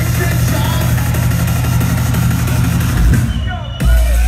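Loud electronic dance music played over a club PA, with a heavy pounding bass beat. About three seconds in, the upper sounds drop away for a moment, then a deep sub-bass drop comes in right at the end.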